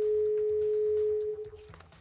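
A single steady pure tone of middle pitch, held for about a second and a half, then fading out.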